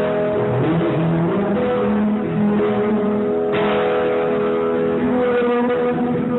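Live acoustic guitar with a man singing over it in long held notes that slide between pitches.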